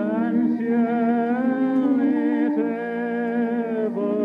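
A slow hymn melody with vibrato, each note held for a second or two, over sustained organ chords.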